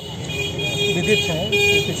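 Outdoor background of people talking, with a steady high tone held for most of it.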